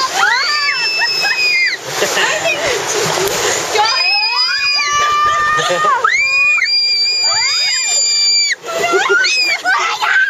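Whitewater rushing and splashing against a rapids-ride raft, heaviest about two to four seconds in, with riders letting out several long, high screams and shrieks over it.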